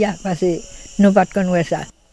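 Speech with a steady, high-pitched insect chirring in the background. Both cut off abruptly near the end.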